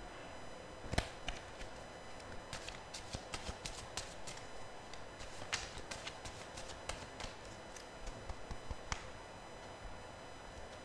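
A deck of tarot cards being shuffled and handled by hand: faint, irregular clicks and flicks of the cards, with a sharper click about a second in.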